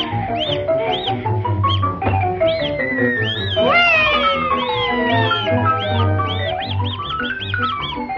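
Cartoon soundtrack music: fast falling and rising runs of notes, with many short swooping glides on top and one sharp upward glide about four seconds in.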